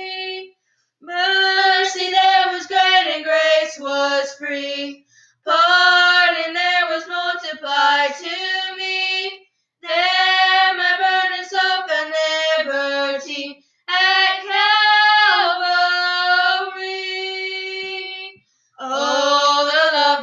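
Two women singing a hymn unaccompanied, in phrases of about four seconds broken by short pauses for breath.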